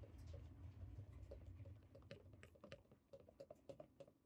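Wire whisk beating a batter in a plastic bowl, its tines making rapid, irregular light clicks against the bowl, faint. A low rumble underneath fades out about halfway.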